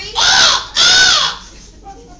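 A woman imitating a bird's squawk twice: two loud, harsh calls of about half a second each, each rising then falling in pitch.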